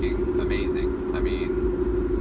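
Steady road and engine noise inside a car's cabin while driving: a low rumble with a steady hum throughout.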